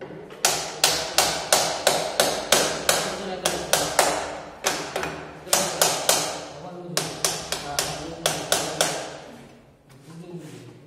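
Repeated hammer blows, about three a second, each a sharp ringing strike, in three runs with two short pauses between them.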